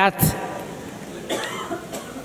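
A pause in a man's speech, with low room noise and a short cough about one and a half seconds in.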